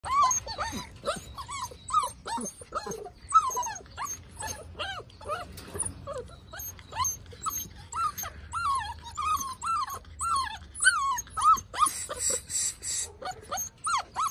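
American Staffordshire Terrier puppies, about six weeks old, whining and whimpering in short high cries, two or three a second. A brief scratchy noise comes near the end.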